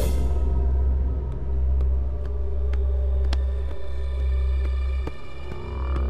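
Dramatic background music: a deep, steady low drone with sustained held tones above it and a few light ticks, starting suddenly.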